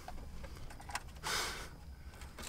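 Faint handling noise from a car-stereo wiring harness and head unit being fitted by hand: light rustling and small plastic clicks, with one short soft hiss about a second and a half in.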